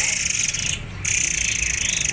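Many caged small songbirds chirping together in a continuous, high, rapid chatter, which breaks off for a moment just before a second in.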